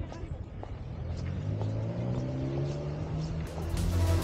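A motor vehicle's engine accelerating on a nearby road, its pitch rising steadily for about two seconds, over outdoor street noise. Music comes in near the end.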